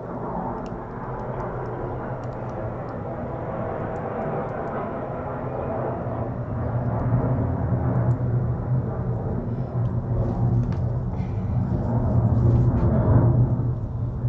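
A steady low rumble with a hum, growing louder about halfway through and again near the end, with a few faint small ticks.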